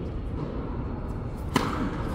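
A tennis ball struck by a racket: one sharp hit about one and a half seconds in, ringing on in the echo of a large indoor hall, over a steady low hum.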